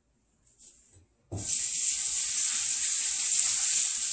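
Kitchen sink tap turned on about a second in, water running steadily into the sink.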